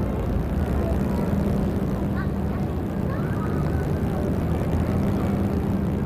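A steady low droning hum that cuts in abruptly and holds at an even level, with a few faint short chirps over it between two and three and a half seconds in.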